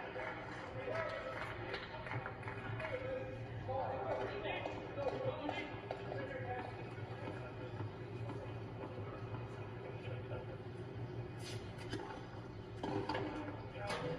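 Indistinct voices and crowd murmur from a tennis broadcast, heard through a television speaker over a steady low hum, with a few short sharp clicks near the end.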